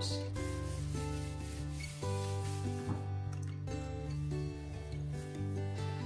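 Background music of slow, sustained chords over a steady bass line, with a soft cloth-on-surface rubbing sound underneath.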